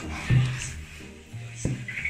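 Background music with low sustained notes playing softly, and a single short knock about one and a half seconds in.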